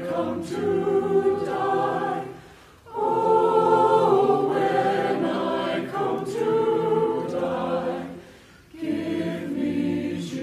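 Mixed church choir of men and women singing in long held phrases, breaking off briefly between phrases about two and a half seconds in and again about eight seconds in.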